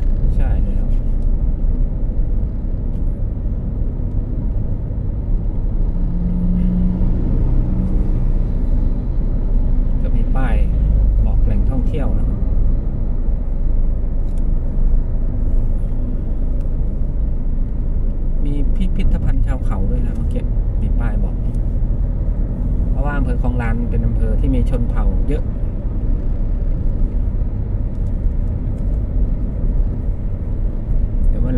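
Steady low rumble of a car's engine and tyres at road speed, heard from inside the cabin.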